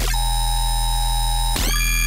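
Electronic dubstep track playing back: a held synth chord over a steady deep sub-bass, with a new synth note sliding up in pitch into place about one and a half seconds in.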